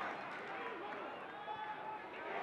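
Football match heard from the touchline: scattered distant shouts from players over the steady murmur of a thin stadium crowd.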